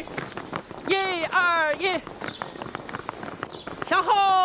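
A squad of men jogging in step, their footfalls a steady patter, with three short shouted drill calls about a second in.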